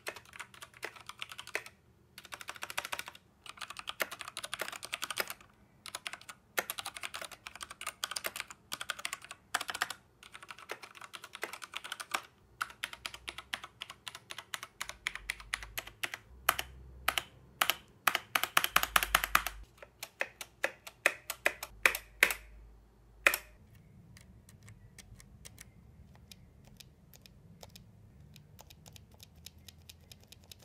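Typing on an Akko 3087 tenkeyless mechanical keyboard with Akko pink linear switches: quick bursts of keystroke clacks separated by short pauses. About three-quarters of the way through, the typing stops after one sharp clack, and only faint, sparse clicks remain.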